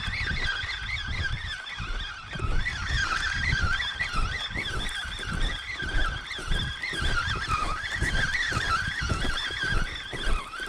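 Spinning reel being cranked to bring in a hooked fish, its gears whining with a wavering pitch that rises and falls with the cranking. Irregular low buffeting on the microphone runs underneath.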